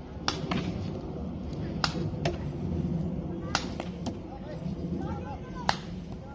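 Paintball markers firing: about five sharp pops at irregular spacing, the loudest near the end, over a low background murmur.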